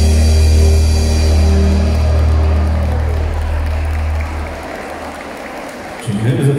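A live band with cello, electric and bass guitars, drum kit and keyboard holds a closing chord that fades out over the first four and a half seconds. Audience applause follows near the end.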